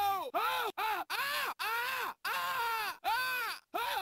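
A man's wailing cry, chopped into short repeated pieces about two a second, each one rising and then falling in pitch.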